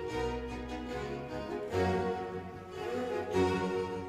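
Background instrumental music in a classical style, with bowed strings holding long notes; the notes change a little under two seconds in.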